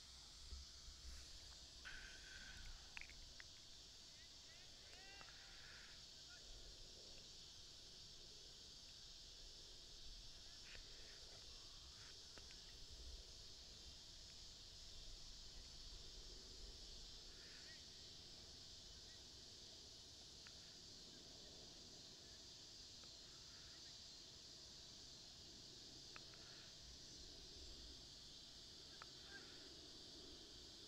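Near silence: faint outdoor background with a steady high hiss, and a few faint distant calls or voices in the first few seconds.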